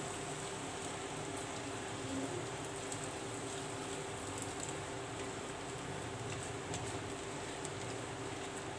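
Faint steady sizzle of vegetables and boiled noodles frying in a hot pan, over a steady hum, with a few light scrapes as the noodles are pushed off a plastic colander with a spatula.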